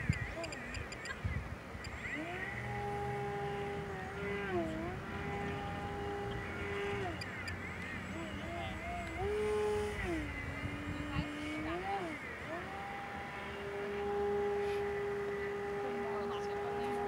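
Electric motor and propeller of a Flite Test Edge 540 RC aerobatic plane in flight: a steady buzzing tone that drops and rises in pitch several times as the throttle changes, held steady near the end, with wind noise on the microphone.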